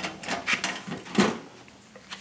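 Metal side cover of a Dell PowerEdge 1900 tower server being unlatched and lifted off: several clicks and scrapes, the loudest a little after a second in.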